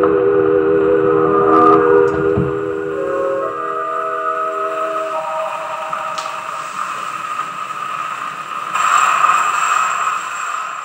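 A 1928 Victor 78 rpm orchestral record played acoustically on a Victrola with a Tungs-Tone stylus: the orchestra holds long sustained chords that shift to higher notes about five seconds in, over steady record surface hiss. The hiss grows louder near the end.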